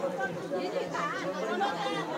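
Several people talking at once, a general chatter of voices with no one voice standing out.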